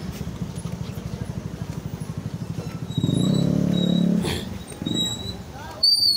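A small motorcycle engine running close by with a fast, even putter, swelling louder for about a second midway, amid busy street noise. A short high-pitched beep comes near the end.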